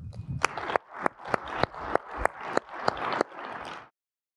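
Audience applauding, with a nearby pair of hands clapping at about three claps a second over the crowd's clapping. It cuts off suddenly just before the end.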